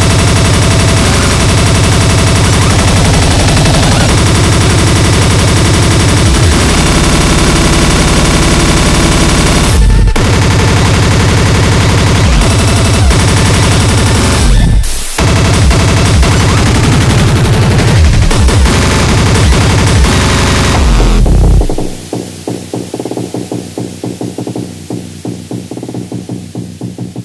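Speedcore electronic music: a dense, heavily distorted wall of kick drums at an extreme tempo with layered synths. About 22 s in, the full mix drops away to a quieter, rapidly pulsing section.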